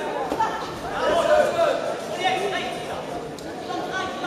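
Several voices talking and calling out at once in a large sports hall: chatter of onlookers and corners around a boxing ring.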